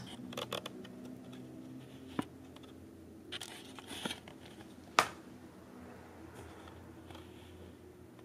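Handling noise from a handheld camera being moved and fumbled close up: scattered light clicks and rustles, the sharpest click about five seconds in, over a faint steady hum.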